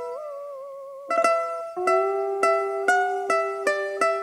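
Instrumental intro of recorded backing music: a plucked-string melody. It opens on a held note that wavers and bends, then moves to single plucked notes struck about twice a second from about a second in.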